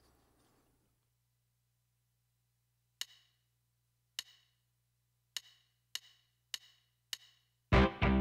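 Yamaha DTX400K drum module's metronome clicking a count-in: six short sharp clicks, two slow ones and then four twice as fast. A loud backing song with drums starts right after, near the end.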